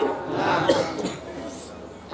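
A person coughing, picked up over the sermon's microphone, in the first second; the sound then falls away to a quieter hall background.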